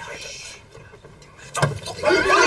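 A loud thump of bodies shoving against a wooden door about one and a half seconds in, after a stretch of low voices.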